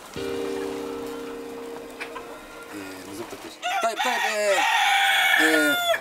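A steady humming tone fading away over about two seconds, followed by chickens clucking and a rooster crowing near the end.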